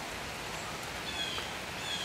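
Steady background hiss with no distinct event, and a few faint high chirps about a second in.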